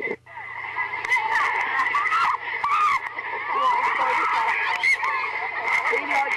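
Several high voices shouting and squealing over one another, with scattered knocks and clicks.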